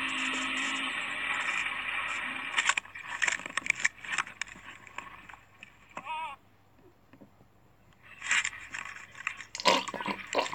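Steady engine and wind noise from an ATV's onboard camera for the first few seconds, then scattered knocks and scrapes with a short quiet lull after the middle, and noise returning near the end.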